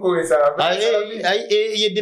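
Speech only: a man talking without pause, in a language the recogniser did not catch.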